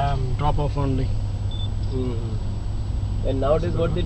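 Steady low rumble of a car driving, heard from inside the cabin, with people talking over it in snatches.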